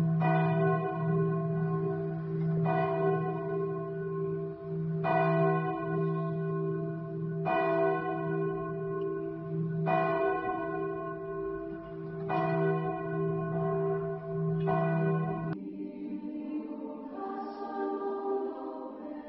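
A church bell tolling slowly, struck about every two and a half seconds, with a low hum ringing on between strikes. The tolling stops a few seconds before the end and soft music takes over.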